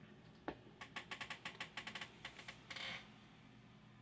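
A quick run of light clicks and taps, about a dozen over two seconds, then a brief rustle: handling noise as things are moved on the workbench.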